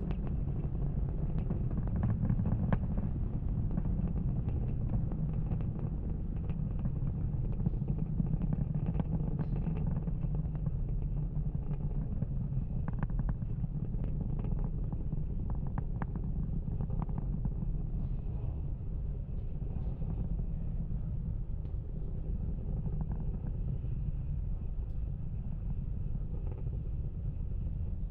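Falcon 9 first stage's nine Merlin 1D rocket engines during ascent: a steady low rumble with scattered crackles.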